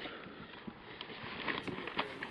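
Faint background noise with a few small, scattered clicks and taps.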